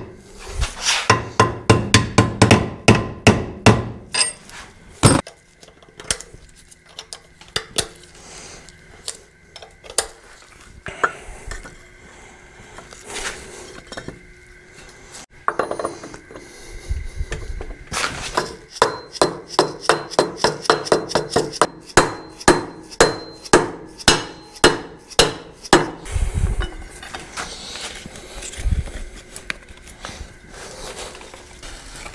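Ball-peen hammer striking metal held in a bench vise, in quick runs of blows about three a second, with pauses of scattered lighter knocks between the runs.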